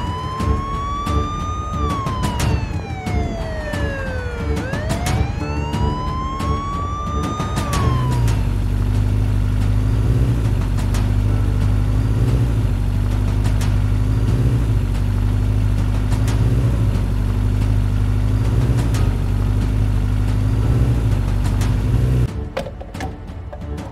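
An emergency-vehicle siren wailing, its pitch sweeping slowly up and down twice before cutting off about eight seconds in. Then a low, droning music underscore with a soft pulse about every two seconds.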